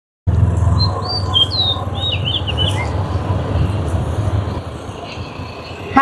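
Birds chirping in a quick run of high, sliding calls over a steady low rumble; the chirps stop about three seconds in while the rumble goes on.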